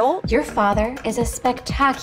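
Speech only: a woman's line of film dialogue, with music faintly underneath.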